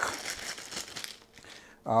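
Clear plastic bag crinkling as a laptop power adapter is handled and pulled out of it, a run of rustles and crackles that fades after about a second.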